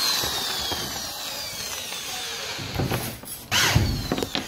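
Cordless drill driver running against a WPC louver panel on a plywood ceiling, its whine slowly falling in pitch as it drives a fixing, with a short louder burst near the end.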